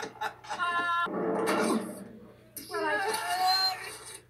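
Animated-film soundtrack with no spoken words: a few quick clicks, a short held pitched note, a brief rush of noise, then a drawn-out wordless vocal sound from a cartoon character.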